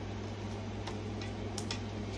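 A few light clicks of long acrylic nails against oracle cards on a glass table as a card is picked up, over a steady low electrical hum.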